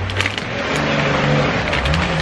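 Wrapping paper being torn and crumpled by hand as a present is unwrapped: a few sharp rips near the start, then continuous crinkling.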